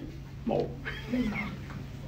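A man's voice saying one short word, then a brief further bit of voice, over a steady low hum.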